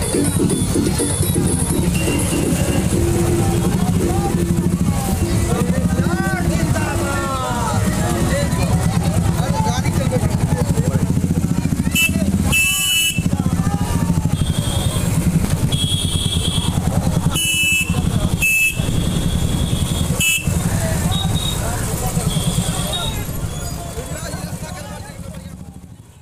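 A group of motorcycles running at low speed, with voices shouting over them. Several short horn toots come in the second half. The sound fades out at the very end.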